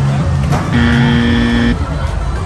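A sideshow game's electronic buzzer sounds one steady buzz, lasting about a second and cutting off abruptly, just after a ball is thrown at the game. Loud fairground music with a heavy bass plays underneath.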